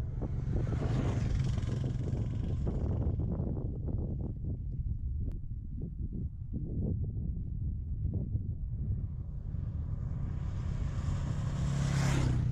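Motorcycle engine running with a steady low drone, under rushing wind noise that is heavier in the first few seconds and again near the end.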